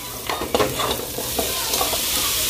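Hot lard sizzling in a pot as diced sausage is tipped in from a plastic bowl onto browning garlic, onion and bell pepper, with the soft knocks of the pieces landing; the sizzle grows louder as they go in.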